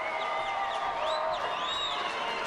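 Arena crowd cheering over music, with high whistle-like tones gliding up and down in arches.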